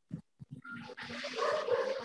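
A child's voice over a video call, quiet and noisy-sounding, as she begins to read the sentence aloud.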